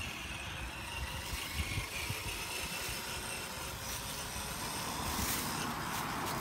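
Traxxas TRX-4 RC crawler's electric motor and drivetrain whining thinly as it drives over dirt, the whine falling slightly and fading after a couple of seconds, over a low uneven rumble. Hiss rises near the end.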